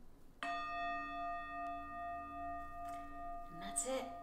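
A meditation bell struck once, ringing on with several steady tones and a gently pulsing hum, marking the end of a one-minute breathing meditation.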